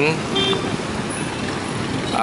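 Street traffic at a motorbike-filled intersection: a steady wash of passing engine and tyre noise, with a brief tone about half a second in.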